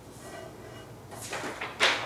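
Clear plastic film positive sheets rustling as they are picked up by hand, a few short crackles in the second half after about a second of quiet.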